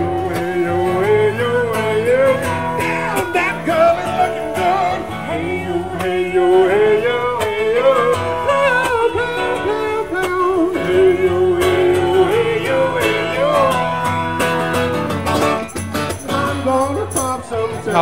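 Live acoustic duo performing a country-style song: a woman singing over a strummed acoustic guitar, amplified through small PA speakers.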